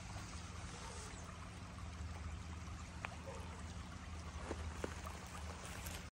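Faint, steady sound of creek water flowing past the edge ice, with a few light clicks scattered through it.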